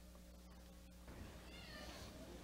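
Near-silent room with a low steady hum, then, about halfway through, a faint high-pitched voice rising and falling in pitch.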